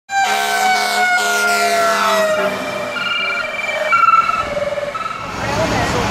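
Emergency vehicle siren whose pitch slides slowly downward over the first couple of seconds, followed by short steady tones at changing pitches. It gives way to a steady noisy outdoor rumble near the end.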